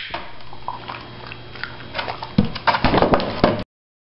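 A dog's feet knocking and clicking on a box and a wooden floor as it steps in, with a run of sharp knocks and clicks about two seconds in; the sound cuts off suddenly near the end.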